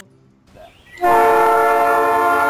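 A brief silence, then about a second in a train horn starts sounding one steady, held chord.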